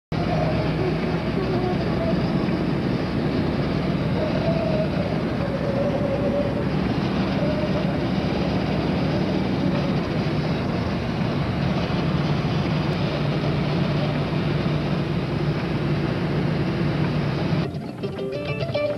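Steady road and engine noise inside a moving car's cabin, a continuous rumble with faint wavering tones under it. It cuts off suddenly just before the end.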